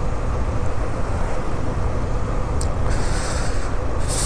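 Motorcycle riding along a road, heard from the rider's camera: a steady rumble of wind on the microphone over engine and road noise. There is a brief hiss about three seconds in.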